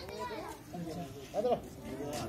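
Children's voices chattering and calling out, high-pitched, with one louder call about one and a half seconds in.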